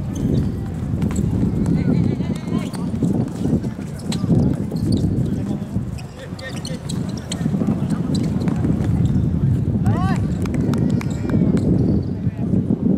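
Football game on an artificial pitch: running footsteps and ball kicks as short knocks, with players shouting to each other, one shout standing out about ten seconds in.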